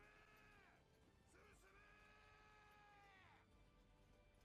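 A man's voice from the anime soundtrack shouting "Forward!" in two long held calls, the second about twice as long, each falling in pitch as it ends; heard faintly.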